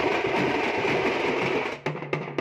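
Thamate drums played together in a fast, dense roll with no separate beats. The roll stops near the end, where single regular strokes take over.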